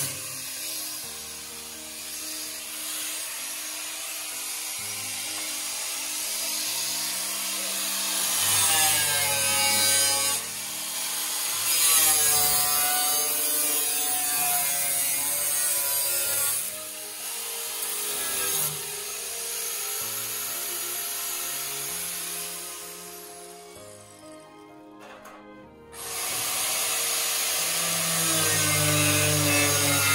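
Angle grinder cutting into the sheet-steel rear bodywork of a Mk2 VW Golf shell, its pitch sliding as the disc is loaded and eased off. It falls away for a couple of seconds about 24 s in, then cuts again, with background music underneath.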